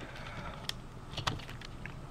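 A few small, sharp plastic clicks and taps from fingers working at a ribbon-cable connector inside an opened laptop, over a low steady background hiss.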